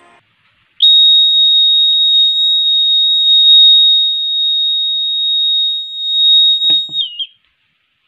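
Buzzer of a homemade MQ-6 LPG gas detector sounding its alarm: one loud, continuous high-pitched tone lasting about six seconds, which starts sharply and dips briefly in pitch just before it cuts off. It signals that gas has been detected at the sensor.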